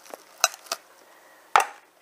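A metal fork clicking against a bowl covered with cling film as the film is pierced: three sharp clicks, the last and loudest about one and a half seconds in.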